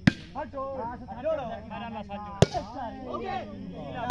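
Two sharp smacks of a hand striking a plastic volleyball, the first right at the start and loudest, the second about two and a half seconds later, with players' voices calling in the background.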